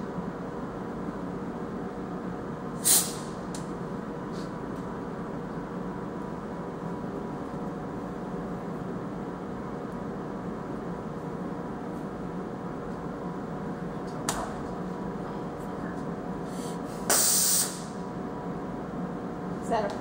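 Steady hum of a CNC mill and shop machinery, broken by short bursts of compressed-air hiss from the mill: one about three seconds in, a brief one around the middle, and a longer half-second blast near the end.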